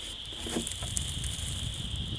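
Outdoor rumble on the microphone with a steady high-pitched drone in the background, and a few faint ticks and rustles as a plastic jug is hung on a tree tap. There is a short grunt-like voice sound about half a second in.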